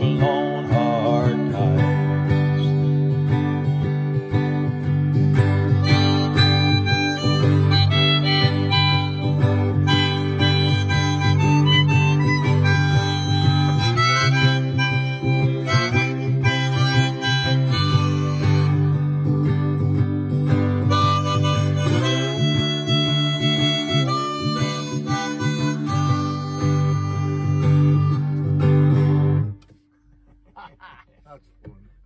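Harmonica solo over a strummed acoustic guitar, an instrumental break that closes the song. The music stops suddenly just before the end.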